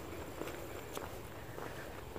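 Faint footsteps on a paved trail.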